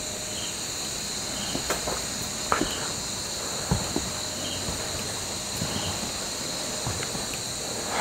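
Steady high-pitched chorus of crickets and other night insects, with a softer chirp repeating about once a second and a few scattered faint knocks.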